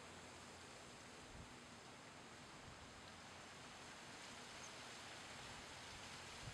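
Near silence: a faint, steady outdoor hiss.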